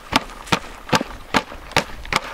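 Stacked plastic seed-starting trays, used as a compost sieve, shaken back and forth on the rim of a plastic tub: a steady rhythm of sharp plastic knocks, about two and a half a second.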